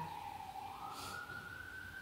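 Police car siren wailing, heard through an open window: one tone slowly falls in pitch, then rises again and holds high.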